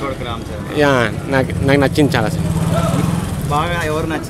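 A motor vehicle engine running as a low, steady drone, a little stronger midway, under men's voices.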